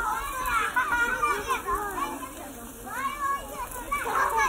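Several children's voices talking and calling out at once, high-pitched and overlapping, as in a recording of children at play.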